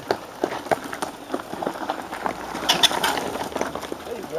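Cyclo-cross riders running uphill on foot with their bikes through dry fallen leaves: quick footsteps, leaf crunching and the light rattle of the bikes, with a louder rustling burst about three seconds in.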